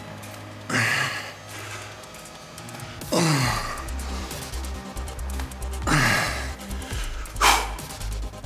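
A man's forceful exhalations, each with a short grunt that falls in pitch, on each rep of a bodyweight single-leg squat. There are four, about two to three seconds apart. Background music with a low bass comes in a few seconds in.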